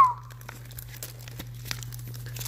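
Plastic toy packaging crinkling and rustling in small scattered crackles as a toy is unwrapped. A short high squeak falling in pitch comes at the very start, the loudest sound.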